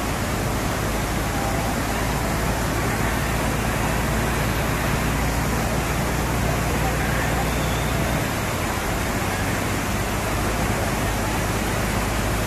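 Steady, loud rush of waterfall water pouring and churning around a crowd of bathers, with crowd voices and splashing mixed in.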